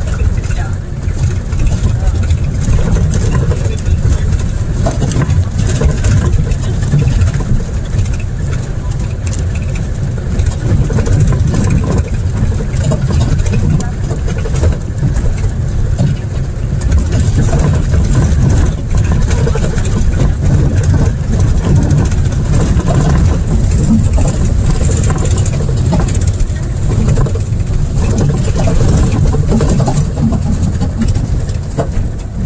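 Safari vehicle driving over rough ground: a loud, steady, low engine and road rumble.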